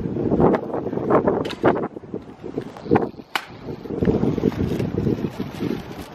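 Wind buffeting the microphone: a gusty low rumble that rises and falls, with a few short sharp knocks around the middle.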